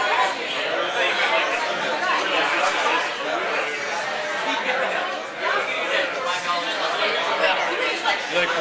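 Busy bar chatter: many voices talking over one another, with no single speaker standing out.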